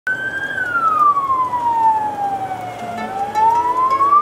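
Ambulance siren in a slow wail: one long fall in pitch over about two and a half seconds, then rising again near the end.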